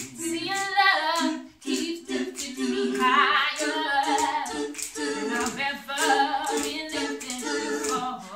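Four-voice a cappella gospel quartet, one man and three women, singing in close harmony, with a sharp hand click on each beat, about two a second.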